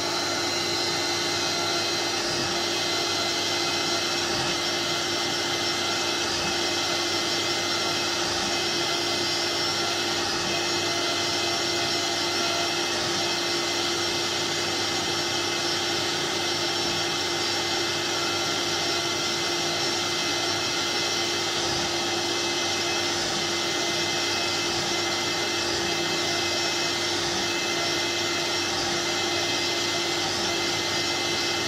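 LPKF ProtoMat S62 circuit-board milling machine with its high-speed spindle running, milling copper traces into a printed circuit board. It makes a steady whine over a rushing hiss.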